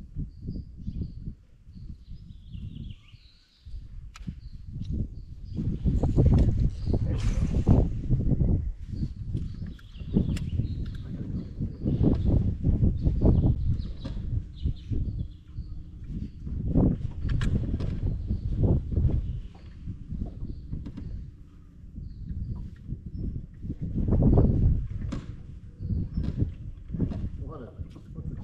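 Wind buffeting an outdoor microphone in irregular gusts of low rumbling, with faint bird chirps.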